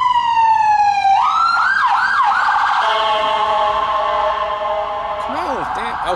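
Emergency vehicle siren passing on the street: a long wail gliding down in pitch, switching about a second in to a fast up-and-down yelp, then a steady blaring sound of several tones.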